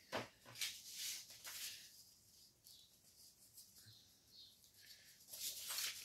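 Faint rustling and crackling of paper as a dictionary page and the journal's pages are handled, in the first couple of seconds and again near the end, almost quiet in between.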